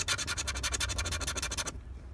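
Scratch-off lottery ticket being scraped with a small metal-tipped scratcher, rapid back-and-forth strokes rubbing off the coating over a bonus spot, stopping shortly before the end.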